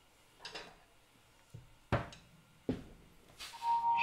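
A few scattered knocks and taps at a drum kit, uneven in timing, the loudest about two seconds in, then music starting to come in near the end.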